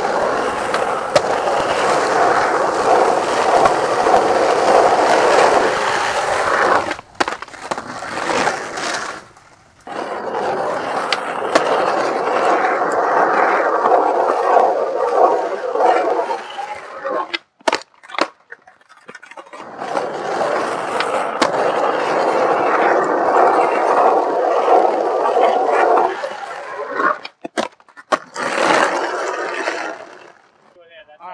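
Skateboard wheels rolling over rough asphalt in three long runs, each lasting several seconds. Between the runs come short breaks with a few sharp clacks of the board.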